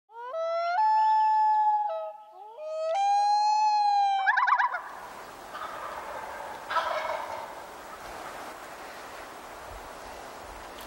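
Two loud, drawn-out calls, each rising into a held, stepped note, followed by a quick rattling trill like a turkey gobble. Then quiet woodland ambience, with a faint call just before seven seconds.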